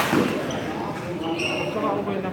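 A badminton racket striking the shuttlecock with one sharp crack, over spectators' chatter. A brief high squeak follows about one and a half seconds in.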